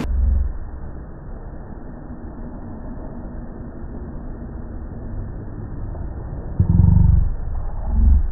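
Wind buffeting an outdoor microphone: a muffled low rumble with no voices, swelling into a stronger gust for about half a second near the end.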